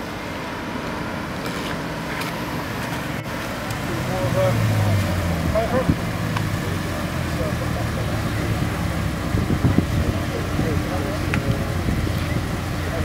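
Mercedes-Benz SLS AMG's 6.2-litre V8 running at low speed as the car pulls up, growing louder about four seconds in, then idling steadily. People talk nearby.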